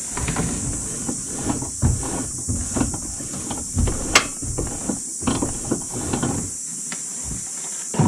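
Polaris Ranger rack-and-pinion steering turned back and forth through its shaft, running smoothly rather than dry, with scattered light clicks and knocks from the joints. One sharper click comes about four seconds in.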